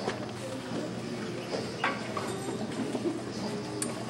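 Footsteps and shuffling with a few sharp knocks and faint murmuring in a school hall, as children take their places on stage before the music starts.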